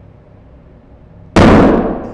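A hydrogen-filled rubber balloon bursting as the pure hydrogen ignites in air: one sudden bang about a second and a half in that dies away over about half a second.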